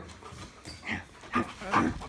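Small dog making short vocal sounds in bursts while playing rough over a chew bone, about a second in and again near the end.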